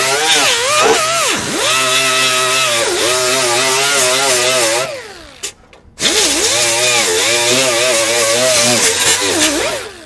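Die grinder with a small abrasive disc grinding on a 1958 Chevy Delray's steel floor pan, its pitch wavering as it is pressed into the metal. It stops about five seconds in, starts again a second later, and winds down near the end.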